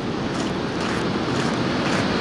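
Pacific surf breaking and washing up the beach: a steady rush of noise that grows slightly louder, with wind buffeting the microphone.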